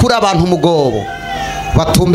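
A man's voice praying aloud into a microphone, loud and drawn out, sliding down in pitch, then a short lull before a new phrase begins near the end.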